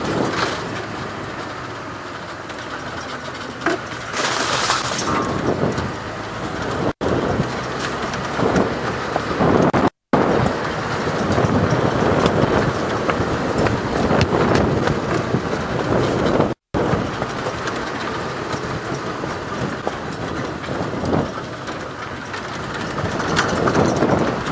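Open safari vehicle driving along a rough dirt track: a steady engine and road rumble with scattered knocks and rattles from the bodywork.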